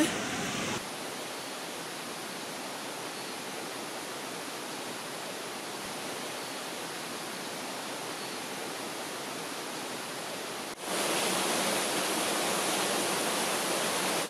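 Steady rushing of water from a stream or waterfall, an even hiss. About eleven seconds in it cuts to a louder, brighter rush of water.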